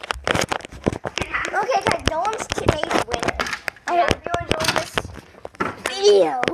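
Children talking, unclear to the recogniser, with many short clicks, knocks and rustles of a camera being handled.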